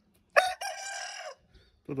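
A rooster crows once, a single call lasting about a second.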